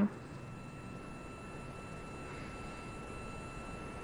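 Steady hiss of a live broadcast audio feed, with a couple of faint, steady high-pitched tones running through it and no voices.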